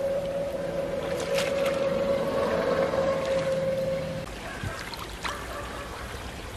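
Shallow stream water running over stones, with a few light splashes as someone wades and feels about in it. A steady hum runs underneath for about the first four seconds, then cuts off suddenly.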